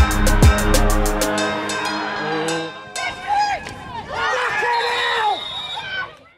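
Hip-hop backing music with a fast hi-hat and deep falling bass notes stops about a second in. Voices and crowd noise follow, and the sound fades out at the end.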